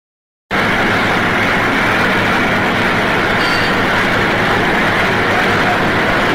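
Steady machine-shop din: many lathes and other machine tools running together, a continuous loud mechanical noise with a low hum that starts abruptly half a second in.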